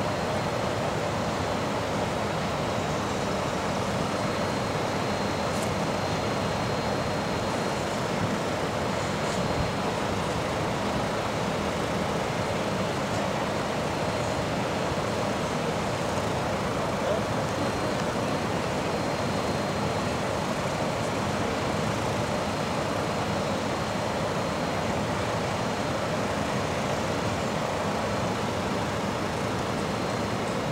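Steady outdoor street ambience: an even, unchanging wash of noise like distant traffic, with a faint constant high whine over it.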